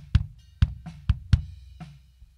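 Soloed kick drum track from a live acoustic drum recording playing back: five kick hits in about two seconds, unevenly spaced as the drummer played them.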